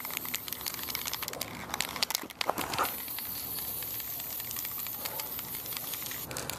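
Aerosol spray can of green primer hissing steadily as it is swept over the miniatures, mixed with sharp crackling and rustling noise. The hiss cuts off right at the end.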